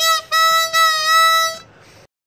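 Yonberg Typhoon diatonic harmonica in A, valved, playing a short note and then one held note of about a second and a half at the same pitch.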